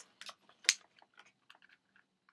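A few faint clicks of small plastic toy pieces being handled, with one sharper click about two-thirds of a second in.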